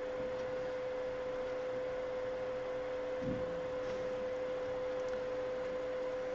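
Steady background hum holding one pitch, over a constant hiss: workshop room tone.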